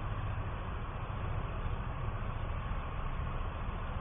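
Steady background noise: an even hiss with a low rumble underneath and no clear events.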